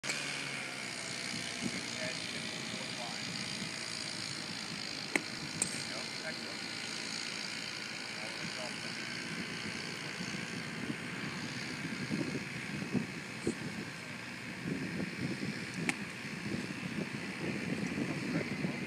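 Steady outdoor background hiss, with a sharp click near the end as a sand wedge strikes through the sand and ball in a greenside bunker shot.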